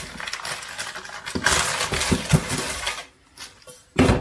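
Clear plastic bag rustling and crinkling as it is opened by hand, louder about halfway, with a few light clinks and knocks as a metal wall bracket and small parts are taken out.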